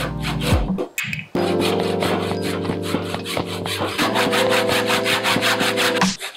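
Handsaw cutting through a block of pine in quick, even strokes, about four to five a second, with a short break about a second in. Background music with sustained tones plays underneath.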